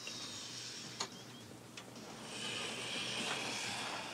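Soft rustling of bedsheets and blankets as a person rolls over in bed, growing louder from about halfway through, with one small click about a second in.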